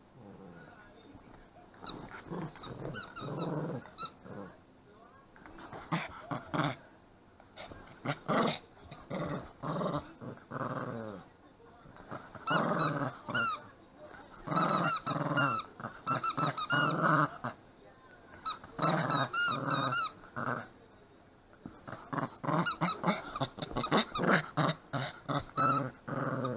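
Small black-and-tan dog growling in repeated bouts as it chews a rubber squeaky toy, which lets out runs of high, wavering squeaks, mostly in the second half.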